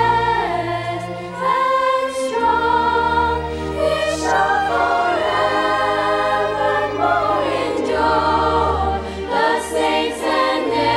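Mixed choir singing a sacred song in harmony, accompanied by an orchestra of strings, brass and harp; long held notes over a sustained bass that changes chord every few seconds.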